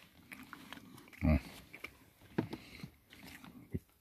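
A German hunting terrier biting and chewing a piece of oat bread topped with cucumber, heard as a scatter of short, crisp crunches.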